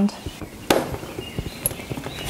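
Handling knocks: a sharp click a little under a second in, then a few lighter ticks and taps, as a jigsaw is lifted off a clamped plywood workpiece and the board is taken in hand. The saw's motor is not running.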